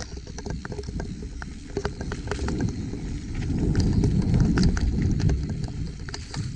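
Mountain bike descending a dirt singletrack: a rumble from the tyres on the dirt, with frequent clicks and rattles from the bike over the rough ground, louder for a couple of seconds past the middle.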